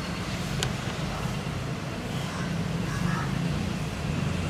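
Steady low background hum and rumble from outdoor machinery or traffic, with a single faint click about half a second in.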